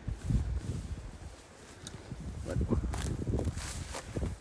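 Footsteps crunching through dry grass and brush, with wind buffeting the microphone as a low, uneven rumble. The brush rustles pick up about two and a half seconds in.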